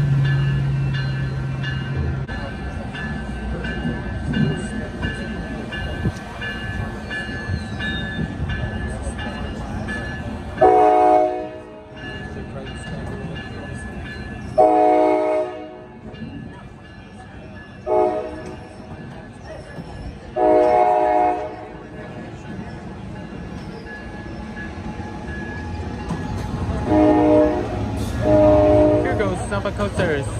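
Coaster commuter train's diesel horn sounding long, long, short, long, the standard grade-crossing signal, over the rumble of the train rolling past. Two more horn blasts come near the end.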